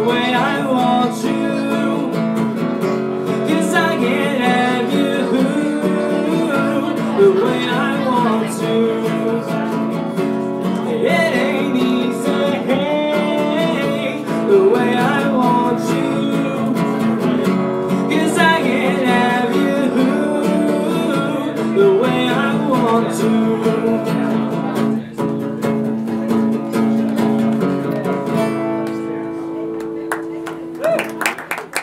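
Live acoustic guitar played with a man singing, getting quieter over the last few seconds as the song winds down.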